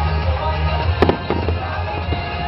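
Fireworks shells bursting with a few sharp bangs, two in quick succession about a second in, over continuous music.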